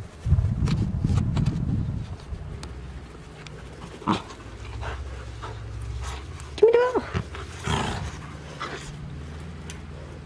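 Corgi panting near the microphone, with one short rising-and-falling call about seven seconds in. A low rumble fills the first two seconds.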